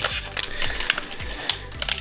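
Foil Pokémon booster pack wrapper crinkling and crackling as it is handled and torn open, a run of irregular sharp crackles that grows busier near the end.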